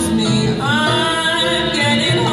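A female vocalist singing a slow jazz tune, accompanied by upright piano and double bass.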